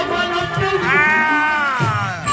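A female griot singer's amplified voice holds one long note for about a second, its pitch rising and then falling away, over accompanying music.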